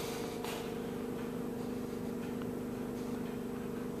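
Steady electrical hum of room tone in an indoor shop, a low even drone with a few pitches held constant throughout, and a faint click about half a second in.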